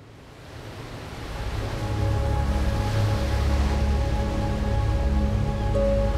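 Ocean waves, a steady wash of surf with a low rumble, fading up out of silence over the first two seconds. Soft sustained music notes come in underneath after about a second and a half.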